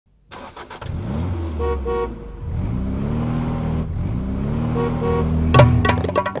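Truck engine running and revving up several times, the pitch climbing and then holding. The horn gives two short toots about a second and a half in and two more near the five-second mark. A drum beat comes in just before the end.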